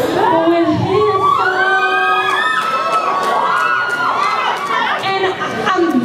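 Audience cheering, with many high voices rising and falling over one another throughout.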